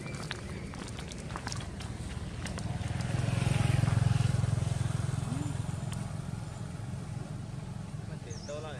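A motor vehicle passing: a low engine rumble that builds, peaks about halfway through and fades away.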